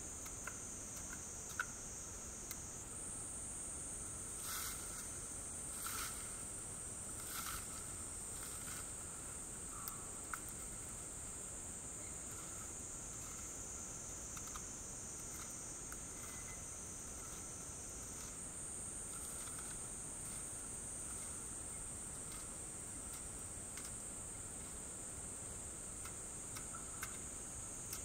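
A steady, high-pitched chorus of insects that shifts slightly in pitch a couple of times, with a few brief knocks between about four and eight seconds in.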